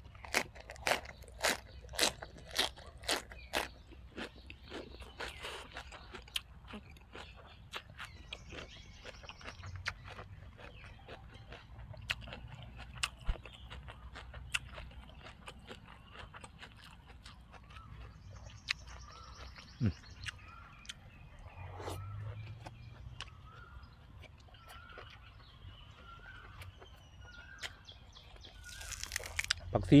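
Crisp crunching as a raw leafy green vegetable stalk is bitten and chewed close to the microphone, about two loud crunches a second over the first few seconds, then quieter chewing. Near the end, a loud rustle of a handful of fresh dill being picked up.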